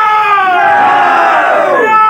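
A group of men shouting a slogan together: one long, drawn-out cry of several voices that slides down in pitch near the end.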